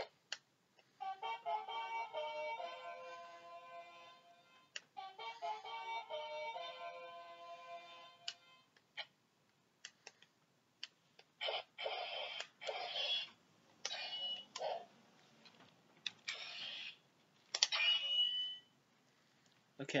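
Power Rangers Legacy Dragon Dagger toy playing its electronic flute tune through its small speaker: a short melody twice, about four seconds apart. It is followed by a run of short, noisy electronic sound effects.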